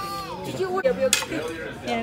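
A soup spoon knocking against a stainless steel soup bowl, two sharp clinks about a second in, amid voices at a dinner table.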